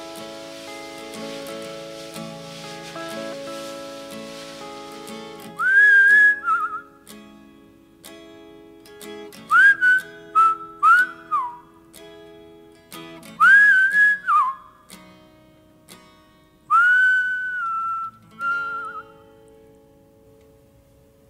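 Guitars playing a slow chord progression, joined about five seconds in by whistling of the melody over them. The whistled melody comes in several short phrases, each sliding up into a held note and some ending in a wavering trill.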